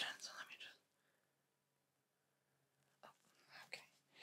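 A soft whispered word, then near silence, then a few faint clicks and taps about three seconds in.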